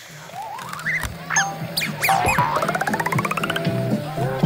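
Short logo-intro jingle with cartoon sound effects: quick springy pitch glides in the first two seconds, then a fast rising run of clicking notes, about ten a second, lasting just over a second, over a low steady bass note.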